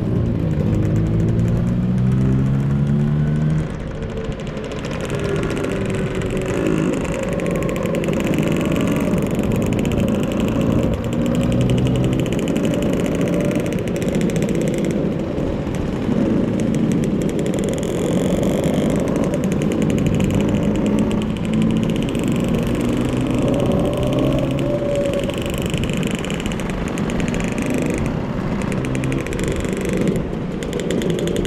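Motor scooter engine running under way, mixed with wind and road noise. Its pitch rises and falls over the first few seconds as the speed changes, then holds fairly steady.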